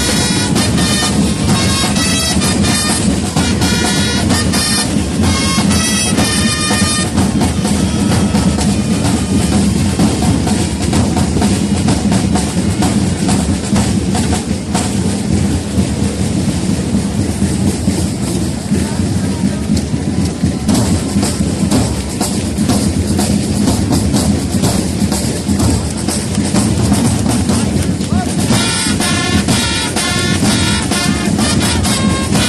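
Marching drum corps of snare and bass drums playing continuous rolls and beats. For the first several seconds, and again near the end, wind instruments hold sustained notes over the drums.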